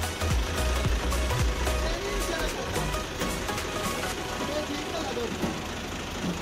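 Background music with a heavy bass beat ends about two seconds in, giving way to a Fiat 480 tractor's three-cylinder diesel engine idling steadily.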